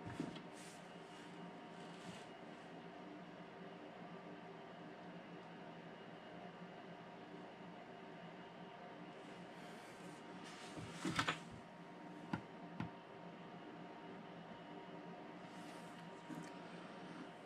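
Quiet room tone with a steady faint hum, and a few soft clicks and knocks a little after the middle, from the soldering iron and track being handled.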